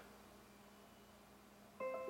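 Near-silent room tone, then near the end a Windows 10 notification chime starts: a few bell-like notes stepping down in pitch and ringing on, announcing a 'Turn on Windows Firewall' notification.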